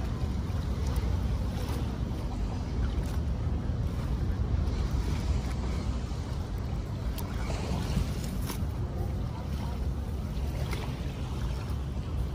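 Wind rumbling on the microphone over the wash of small waves at the shoreline, with a few faint ticks.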